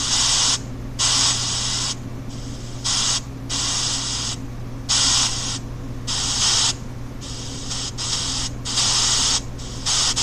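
Pink noise from a phone's EVP ghost-hunting app, chopped into short bursts that switch between a loud and a softer level with brief gaps between them, a steady low hum underneath.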